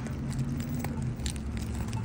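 Street ambience heard while walking: a steady low rumble that grows a little stronger about halfway through, with a few light clicks.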